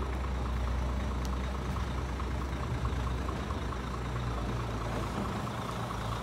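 Heavy diesel engine of an IVECO dump truck running steadily at idle, a low continuous drone.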